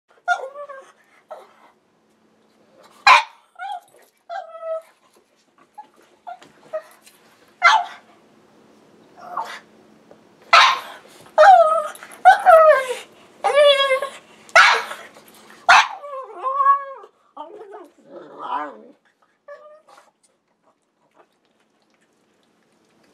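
A black pug complaining with a mix of sharp single barks and long wavering whines and moans. The sounds come every second or two, busiest and loudest in the middle, and thin out to a few small whimpers near the end.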